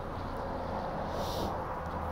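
Quiet outdoor background: a low steady rumble, with a brief soft hiss about a second in.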